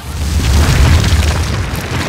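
A deep boom sound effect with a heavy rumble and crumbling, crackling debris, like a stone wall being smashed apart. It starts suddenly and is loudest about a second in.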